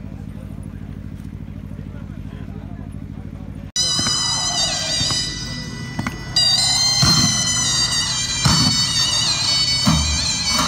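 A steady low hum, then about four seconds in Turkish zeybek dance music starts abruptly: a reedy, wavering zurna melody over slow, heavy davul drum beats about a second and a half apart.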